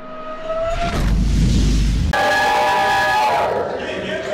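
Intro sting over a logo and title animation. A held tone bends slightly upward, a deep boom comes in about a second in, then a held chord of several tones sounds and fades out before the end.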